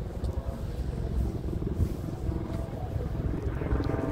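Helicopter approaching, its rotor making a steady low chopping rumble, mixed with wind on the microphone.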